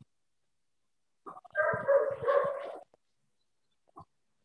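A dog barking briefly over a video call: about a second and a half of barking that starts a little over a second in, with silence around it.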